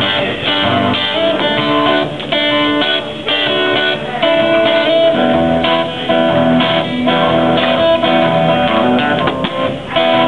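Acoustic guitar playing, strummed chords ringing under held notes.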